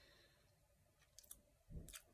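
Near silence with a few faint mouth clicks and lip smacks in the second half, from a person tasting whisky, ending in a short breath-like click just before speech.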